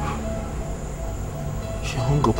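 Background film score: a low, sustained, brooding drone with a rumbling bass, and a brief hiss near the end.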